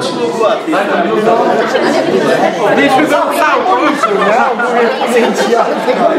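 Crowd chatter: many people talking at once around tables, several voices overlapping continuously.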